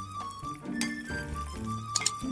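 Background music, with the clink of wooden salad servers striking the side of a glass mixing bowl twice as pasta salad is tossed.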